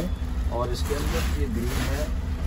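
A steady low rumble of street traffic, with faint talk over it.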